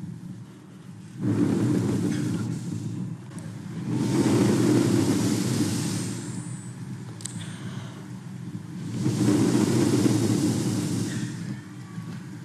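Long breaths blown into a handheld microphone: three rushing swells of noise, each two to three seconds long, with short quiet gaps between them.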